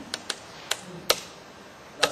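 Laptop keys being pressed: four sharp, irregular clicks, the loudest a little after a second in, as the presentation slide is advanced.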